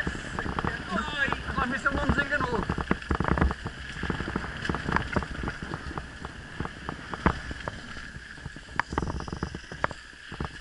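Mountain bike jolting over a rough, wet dirt track: irregular rattles and knocks from the bike, over wind noise on the microphone.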